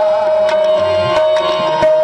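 Harmonium holding one steady note while tabla is played with quick strokes, the low bass drum's pitch sliding under the strokes.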